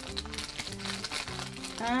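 Clear plastic bag of sequins and pins crinkling as it is handled, over steady background music.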